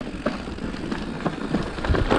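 Downhill mountain bike rolling fast over a dirt trail: steady tyre and wind noise on the camera, with rattles and clicks from the bike over bumps, and louder knocks starting right at the end.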